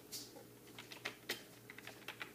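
A few light keystroke clicks at an irregular, unhurried pace, like someone slowly typing out a word on a keyboard. A faint steady hum runs underneath.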